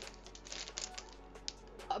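Light, irregular clicks and taps of small makeup items being handled and set down on a table.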